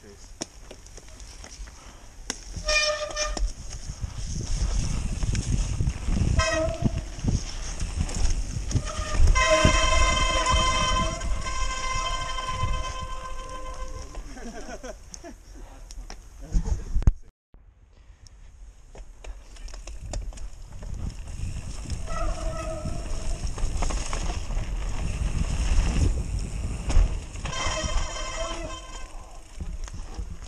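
Mountain bike ridden fast down a loose dirt trail: tyres rolling and skidding, with the chain and frame rattling over bumps. A steady rear freewheel hub buzz comes in whenever the rider coasts, longest from about nine to fourteen seconds in.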